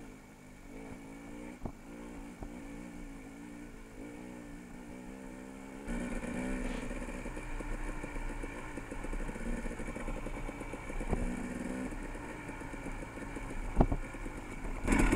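Dirt bike engine running at light throttle, getting louder from about six seconds in as the bike picks up speed, with a few short knocks.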